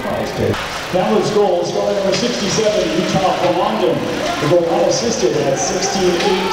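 Indistinct voices with music playing over the arena sound system.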